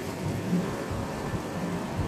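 Steady street ambience: an even hum of city and vehicle noise along a shopping street, with a few faint brief tones mixed in.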